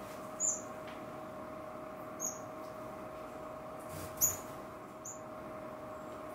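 Small aviary finches giving four short, high chirps spread through the moment, over a steady low hum.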